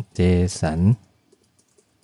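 Computer keyboard typing: a run of quick, light keystrokes, faint next to a short spoken word in the first half.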